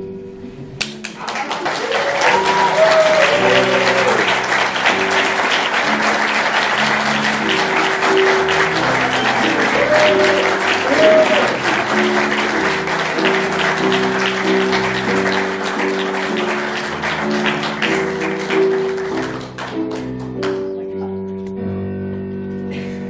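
Audience applause with a few cheers, over a backing music track that keeps playing. The applause starts about a second in, holds steady, and dies away near the end.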